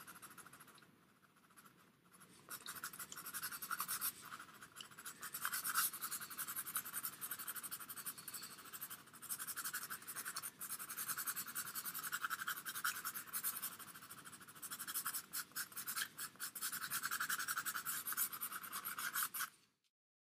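Pastel pencil scratching on PastelMat paper in quick, short shading strokes. The strokes come in bursts with brief pauses, start about two seconds in and cut off suddenly just before the end.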